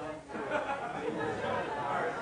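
Many people talking at once: overlapping conversation chatter from a roomful of seated and standing guests.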